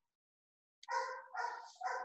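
A dog barking: three short barks in quick succession, starting about a second in.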